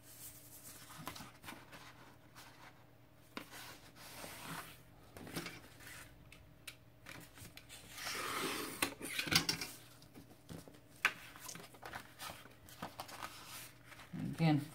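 Sheets of heavy scrapbook paper being handled on a table, with light rustles and taps. About eight seconds in, a snap-off utility knife cuts through the paper with a scratchy rasp lasting about a second and a half, followed by a few sharp clicks.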